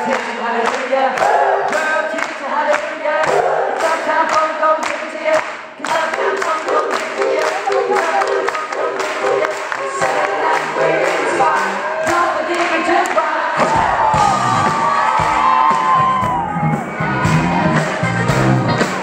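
Male vocal harmony group singing close a cappella harmonies over a steady handclap beat, about two claps a second, with the crowd cheering. About fourteen seconds in, the backing band comes in with drums and bass.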